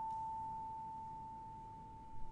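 One pure high musical tone, held and slowly fading, during a quiet passage of a contemporary chamber piece for flute, clarinet, percussion, zheng and electronics.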